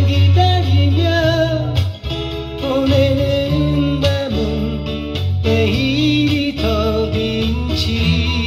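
A man singing a Korean ballad while strumming a steel-string acoustic guitar.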